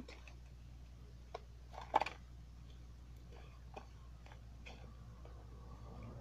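Scattered light clicks and taps from handling a two-blade pocket knife and a small cardboard gift box, with one sharper click about two seconds in.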